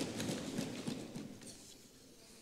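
Members of the house thumping their desks in a quick, irregular run of knocks, a show of approval that fades away within about a second and a half.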